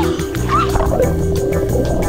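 Background music with a steady beat and pulsing bass.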